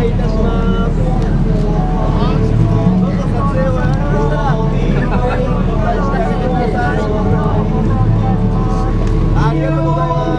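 A person's voice amplified through an outdoor stage PA, with some held pitches, over a steady low rumble.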